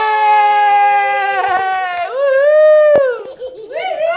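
A young child's long, high-pitched squeal of delight, held steady for about a second and a half, then a second squeal that rises and falls, with a sharp click partway through it.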